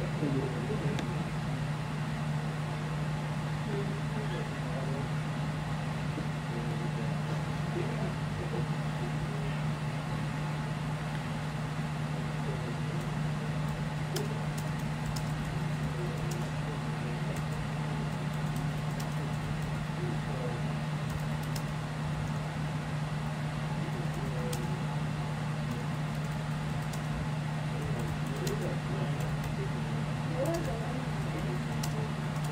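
A steady low hum, with faint clicks of laptop keys being typed in the second half.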